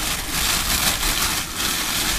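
Clear plastic bag crinkling and rustling as hands unwrap a small statue, with a low hum underneath.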